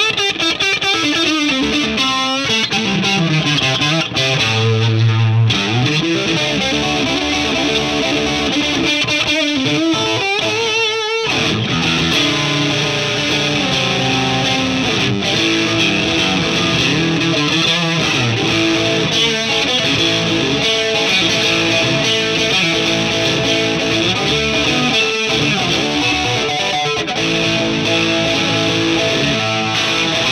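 Fender Custom Shop 1964 Stratocaster Relic electric guitar played through the overdriven gain channel of a Marshall JCM2000 amp: distorted playing with a descending run in the first few seconds and a held low note around five seconds. There is a short break near eleven seconds, then steady chordal riffing.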